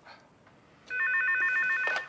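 Electronic office desk telephone ringing: one warbling ring of rapidly alternating tones, starting about a second in and lasting about a second.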